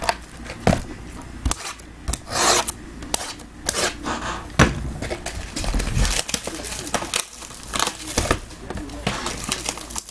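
Cardboard trading-card boxes being handled: sliding and rubbing against each other with scattered knocks, and a short rasping scrape about two and a half seconds in.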